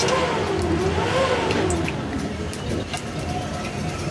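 Whole spices (cinnamon, cardamom and cloves) dropped into hot oil in an aluminium pot, giving a few faint light ticks. Under them runs a steady low rumble, and a wavering tone rises and falls through the first half.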